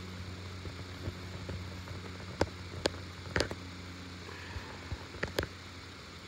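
A handful of sharp metal clicks and knocks from handling the jackhammer's chisel bit while trying to seat it in the tool, over a steady low hum.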